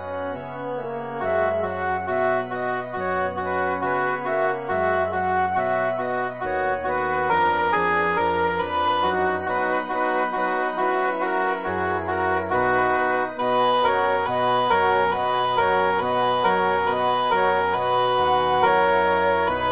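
Choral rehearsal track: an electronic oboe sound carrying the alto line over organ and piano accompaniment, in sustained notes that change pitch every second or so.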